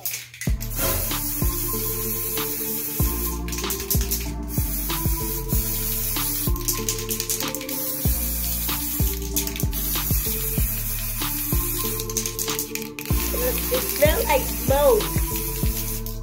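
Background music with a beat and deep bass notes. Under it runs a steady hiss from an aerosol can of temporary gold hair-colour spray being sprayed onto a child's hair.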